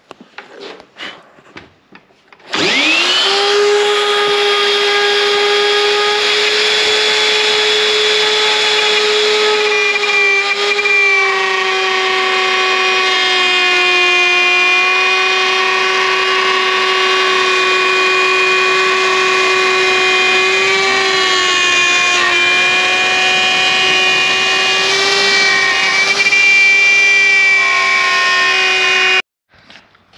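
Plunge router spinning up about two and a half seconds in, then running with a steady high whine as its 6 mm straight flute bit cuts a door panel out of 15 mm lightweight plywood along a template. The pitch sags slightly now and then under load, and the sound stops abruptly near the end.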